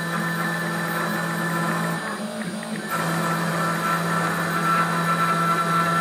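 Nomad 883 CNC spindle driving a 1/16-inch end mill through Corian, a steady pitched whine. For the first couple of seconds it is a climb cut with even, consistent sound. About two to three seconds in the pass reverses into a conventional cut, which is "grittier" and carries a sharper, harsher tone that never smooths out.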